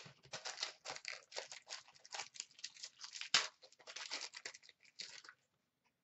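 Packaging of a sealed hockey card box being torn open and crinkled by hand: a quick run of irregular rustles and rips, with one sharper rip about three and a half seconds in, stopping a little after five seconds.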